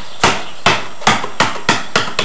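A basketball dribbled on a concrete driveway: six sharp bounces, coming faster toward the end.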